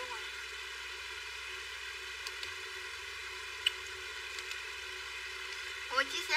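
A pause in speech: steady low background hiss, with two faint clicks a little after two and a half seconds in and near four seconds in.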